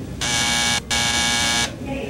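Airport walk-through metal detector alarm buzzing in two loud bursts, the first about half a second long and the second a little longer, with a short break between: a passenger carrying metal has set it off.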